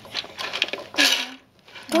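Small plastic pieces clattering out of a toy garbage truck's tipping bin onto a wooden floor, a short rattle about a second in.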